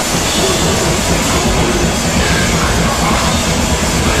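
Hardcore punk band playing live and loud: distorted electric guitar and drums in a dense, unbroken wall of sound.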